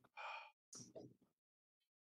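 A man's short gasp, then a brief murmured vocal sound, with dead silence between and after.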